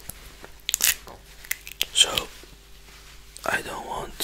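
Wet mouth clicks and smacks of chewing soft rambutan flesh, a few sharp clicks around one and two seconds in.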